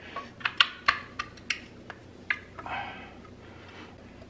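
Sharp metallic clicks and clinks of drum brake shoes and their springs knocking against a powder-coated brake backplate as they are forced into place by hand, with a short scrape near the end. The shoes won't seat over a tab because the powder coat is in the way.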